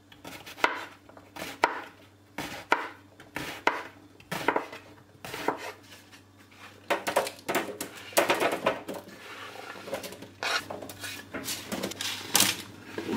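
A knife chopping peeled eggplant on a wooden cutting board, one sharp stroke about every second. In the second half comes a denser rattle of the cubes being scraped off the board onto a parchment-lined baking tray.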